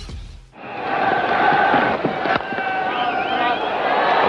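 Electronic intro music cuts off in the first half second, then a cricket stadium crowd cheering and chanting. A single sharp crack of bat on ball comes about two and a half seconds in.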